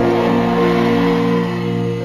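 Background music of slow, sustained chords held steady, with a new higher note coming in at the very end.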